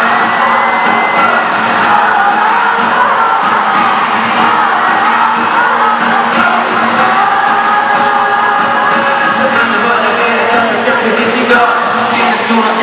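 Live pop music at an arena concert, loud and continuous: the band plays while the crowd sings and cheers along, heard from among the audience.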